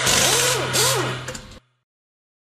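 Logo sound effect of a car engine revving, rising and falling twice over a rushing noise, which cuts off abruptly about one and a half seconds in.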